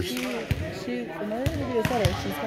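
Volleyballs being hit and bouncing on a gym floor: about three sharp thuds, echoing in a large hall, among background voices.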